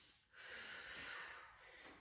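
A woman's single faint breath, lasting about a second and a half, drawn while she holds a plank under exertion.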